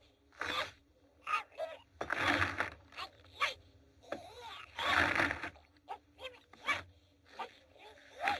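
Short bursts of scuffling and scraping across a wooden floor littered with broken crockery, mixed with sharp clicks and a few brief pitched vocal squeaks or grunts.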